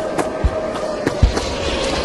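Title-sequence sound effects: a steady crackling hiss with scattered sharp clicks and two low thuds, under a faint held tone.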